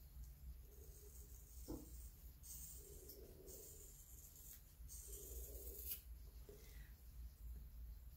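Near silence: faint room tone with a soft click a little under two seconds in and a few brief, faint hissy sounds.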